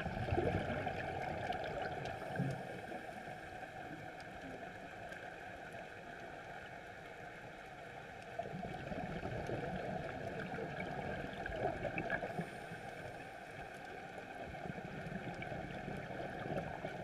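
Underwater sound on a scuba dive: the diver's exhaled regulator bubbles gurgle in two long surges, one in the first few seconds and one starting about eight seconds in, over a steady underwater hiss with faint crackling.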